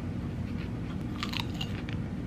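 A person chewing a mouthful of lettuce salad with chicken, mouth closed, with a few crisp crunches a little over a second in. A low steady hum runs underneath.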